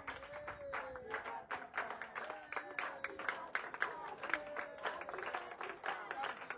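A crowd of children clapping their hands in a steady rhythm, several claps a second, with voices singing along over the claps.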